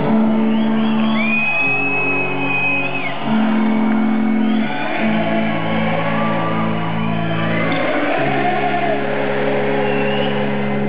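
Rock band playing live in an arena, heard from the audience: electric guitars and keyboards hold sustained chords that change every second or two. A high held note enters about a second in and lasts about two seconds.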